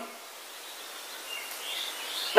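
Steady low hiss of background noise in a pause of speech, with a faint high chirp-like tone in the last half-second.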